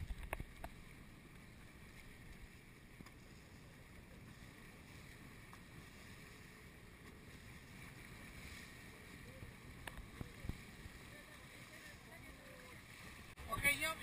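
Faint, steady noise of a small boat at sea with light wind, then a sudden burst of splashing about a second and a half before the end, as water churns around a swimmer's fins.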